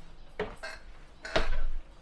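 Short clattering knocks: a light one about half a second in and a louder one around the middle.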